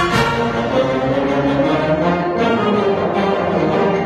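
A full concert band of woodwinds and brass (flutes, clarinets, saxophones, trumpets, trombones, tubas) playing together, holding full chords that shift every half second or so.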